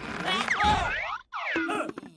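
Cartoon sound effects as a sofa tips over backwards: springy boings and sliding, falling pitches, mixed with the characters' wordless yelps. There is a short break just after the first second.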